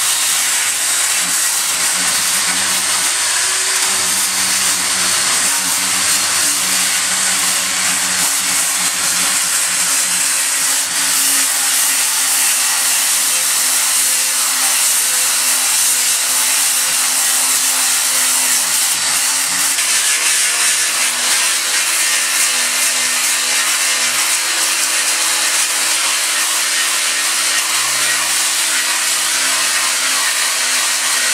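A 7-inch angle grinder with a sanding disc on a backing pad running steadily against the hardened steel face of an anvil, a continuous high-pitched grinding that takes metal off to flatten the sagging face.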